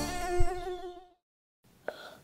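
Cartoon mosquito buzzing sound effect, a wavering whine that fades out about a second in, followed by a short silence and a faint brief sound near the end.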